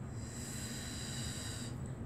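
A woman's long exhale through the mouth, a steady breathy hiss that stops about a second and a half in, breathing out on the effort of a pilates leg lift.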